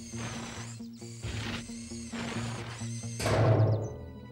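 Cartoon digging sound effects: a digger's bucket scraping and scooping into soil in about four strokes, the last, near the end, a heavier crunch. Steady background music runs underneath.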